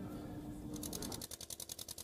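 Fast, even ticking, about a dozen ticks a second, starting about a second in over a faint steady hum that stops shortly after.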